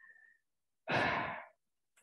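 A single audible breath from a speaker, picked up by the microphone about a second in and lasting about half a second, with quiet on either side.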